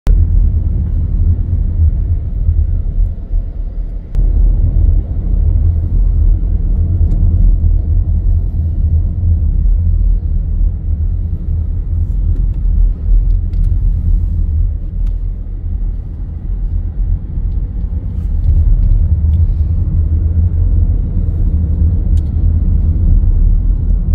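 Steady low rumble of a car driving in city traffic, heard from inside the cabin: engine and tyre noise.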